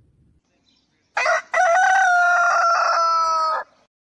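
A rooster crowing once, about a second in: a short first note, then a long held note whose pitch sinks slightly before it stops.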